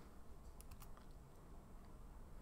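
A few faint computer keyboard taps, mostly in the first second, over near silence.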